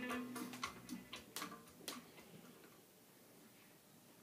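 Acoustic guitar music dying away in the first second, with a few sharp ticks up to about two seconds in, then only faint hiss.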